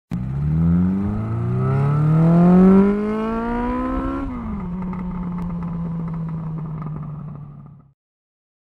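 A vehicle engine accelerating, its pitch climbing; about a second in it drops after a gear change, then climbs again for about three seconds. It then falls back to a steady pitch and fades out near the end.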